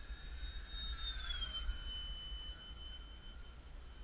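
ParkZone Habu electric ducted-fan jet flying past, its high fan whine dropping in pitch about a second and a half in as it goes by. Low wind buffeting on the microphone throughout.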